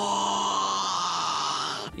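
A voice holding one long, steady-pitched 'puuu' sound that cuts off abruptly near the end.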